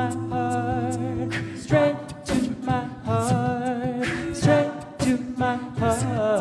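A cappella vocal ensemble singing a wordless passage: sustained backing chords and a wavering, ornamented upper vocal line, with short hi-hat-like vocal percussion keeping a steady beat.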